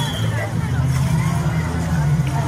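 Crowd of spectators talking over one another along a street, over a steady low rumble.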